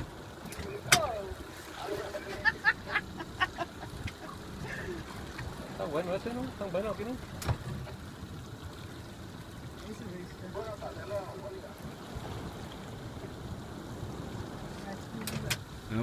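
Steady low hum of a boat running at sea with water noise, broken by a few sharp clicks: one about a second in, a quick cluster a little later and another past the middle.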